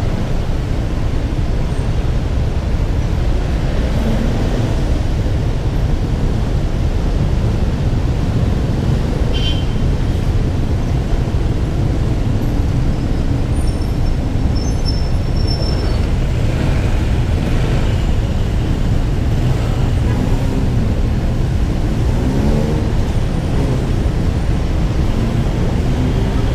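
Steady low rumble of a motorcycle ride through city traffic: engines and road noise around the rider. A brief higher sound about nine seconds in, and faint wavering engine pitches near the end.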